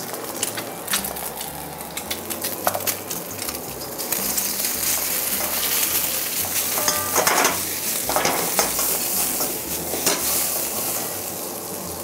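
Rice and egg frying in oil in a hot wok, sizzling, while a metal wok ladle scrapes and clacks against the pan as it stir-fries them. The sizzle grows louder about four seconds in.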